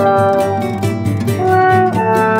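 Instrumental background music with a jazzy feel: held horn-like notes over guitar and a steady beat.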